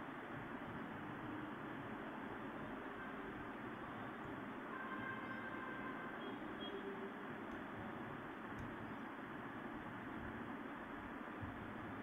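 Steady background hiss and room noise picked up by a phone's microphone, with a few faint short tones about five to seven seconds in.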